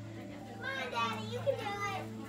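Children's high-pitched voices calling out with no clear words, twice, over a steady low hum.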